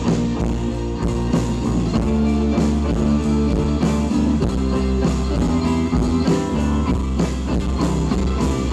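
Live band playing an instrumental passage with electric and acoustic guitars, banjo and mandolin over a steady drum-kit beat.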